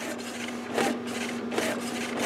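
HP 8600-series inkjet printer printing its alignment page: repeated swishes of the printhead carriage passing back and forth over a steady low hum. It is printing again, the sign that the ink system failure error has cleared.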